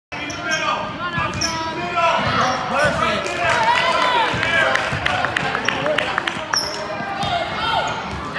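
Basketball bouncing on a gym's hardwood floor during a youth game, with players' and spectators' voices in the hall.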